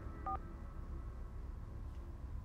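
A single short dual-tone telephone beep about a quarter second in, closing a voicemail message, over a steady low hum of room tone.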